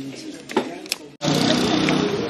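Quiet outdoor ambience with faint voices and a couple of sharp clicks, then an abrupt cut a little past halfway to louder street noise: traffic with people talking.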